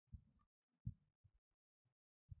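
Near silence: room tone, with a few faint, short, low thuds.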